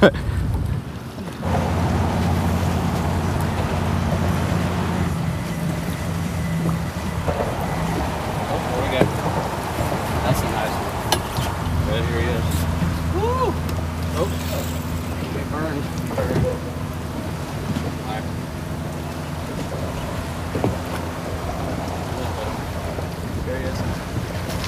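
A boat motor runs with a steady low hum, easing off somewhat in the middle and coming back up, with a few light knocks over it.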